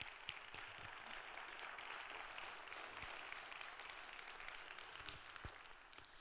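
Audience applauding: a steady, fairly faint patter of many hands clapping that thins out near the end.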